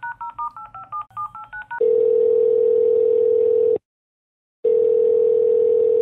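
Touch-tone telephone keypad dialing, quick two-note beeps about five a second. Nearly two seconds in it gives way to a steady telephone line tone, held about two seconds, broken for under a second, then sounding again.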